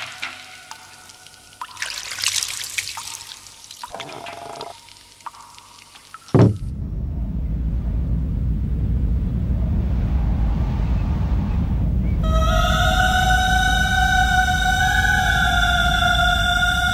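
Film soundtrack: a few soft splashes and drips of water over fading held notes, then a sudden hit about six seconds in that opens into a deep, steady rumble. A few seconds before the end a high, slightly wavering held note with overtones joins the rumble.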